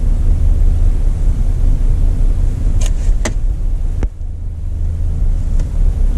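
A Jeep's engine idling, heard from inside the cabin as a steady low rumble, with two light clicks about three seconds in and a third a second later.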